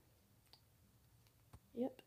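Quiet room with a faint low hum, broken by two small clicks, a faint one about half a second in and a sharper one about a second and a half in, then a short vocal sound from the person just before the end.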